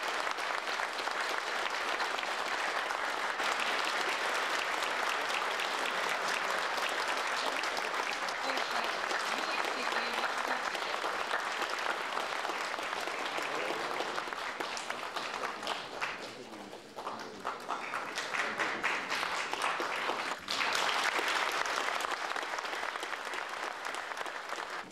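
Audience applauding, a dense, steady clapping that thins for a moment about two-thirds of the way through, then comes back just as full after an abrupt break.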